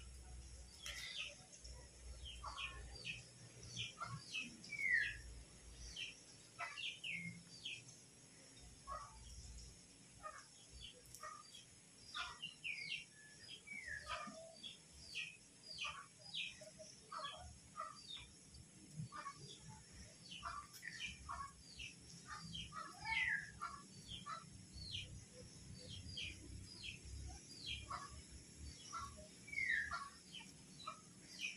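Birds chirping, faint: many short chirps and quick falling notes overlapping throughout, a few louder downslurred calls standing out.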